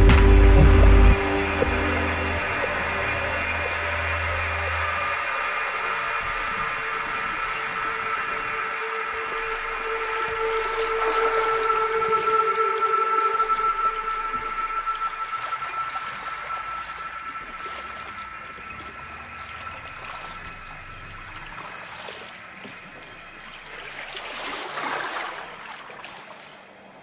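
Ambient music of long held tones, with water rushing and bubbling underneath. It gradually fades, with a brief swell near the end.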